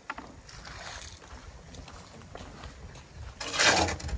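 A shovel scraping and scooping wet concrete on the wooden bed of a tractor trailer, with a louder rough scrape about three and a half seconds in.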